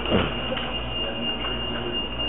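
A steady high-pitched tone over restaurant room noise, with a short burst of voices just after the start.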